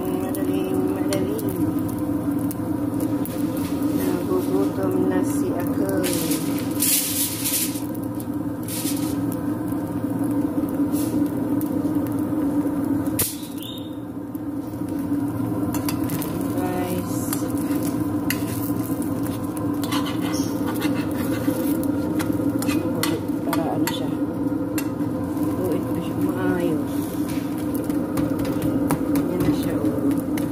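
A chapati cooking in a nonstick frying pan: light sizzling with occasional scrapes and taps of a metal spatula against the pan, over a steady droning hum.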